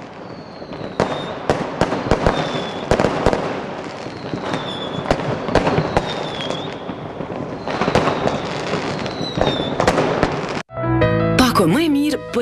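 Fireworks going off in rapid succession, sharp bangs and crackling with thin whistles that dip in pitch. The sound cuts off suddenly near the end, and music follows.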